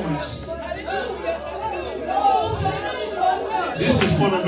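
Several voices praying or vocalising aloud at once in a church hall, a man's voice on a microphone among them, with no clear words. A brief crash, like a cymbal, comes near the end.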